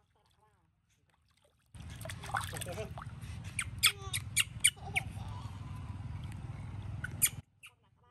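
Water splashing and dripping in a plastic basin as a baby monkey is washed by hand, with a run of sharp clicks in the middle and a few faint squeaks, over a low steady hum. The sound starts and stops abruptly.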